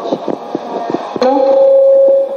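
Several short knocks and rubs, typical of a handheld microphone being handled, then about a second in a loud steady pitched tone that holds to the end.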